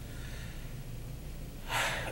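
A steady low hum of room tone, then near the end a man's short, sharp intake of breath before he speaks again.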